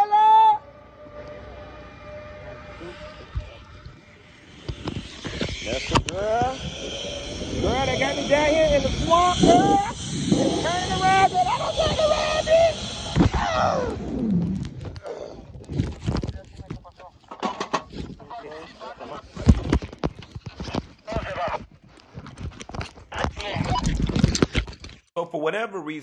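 A person crying out in high, wavering, wordless cries while speeding down a zipline, over a rushing noise. For the last ten seconds or so, wind and handling noise knock irregularly on the phone's microphone.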